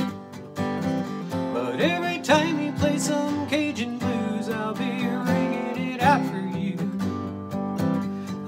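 A 1982 Takamine acoustic guitar, built to Martin D-28 specs, played in an instrumental passage, with chords and picked notes ringing on.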